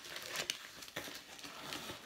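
Shiny plastic packaging on a cardboard box crinkling and rustling as it is pulled open by hand, with faint irregular clicks.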